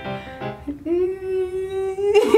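A woman's voice singing one long held note, sliding up into it about two-thirds of a second in and holding it steady.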